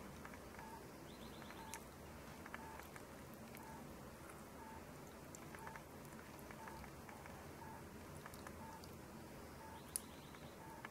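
Near silence: faint room tone with a faint short chirp-like tone repeating about once a second and a few faint ticks.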